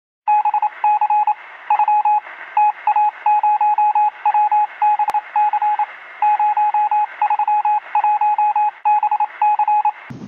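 Morse code: a single beeping tone keyed rapidly on and off in short and long beeps over a steady hiss, like CW heard through a radio. One sharp click sounds about halfway through.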